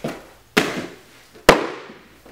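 Hands, feet and body slapping a padded mat floor twice during floor tumbling, about a second apart, the second hit louder, each ringing briefly in the room.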